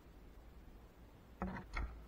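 A recurve bow being shot: the string is released with a short twang about one and a half seconds in, followed a moment later by a dull thud as the arrow strikes the target.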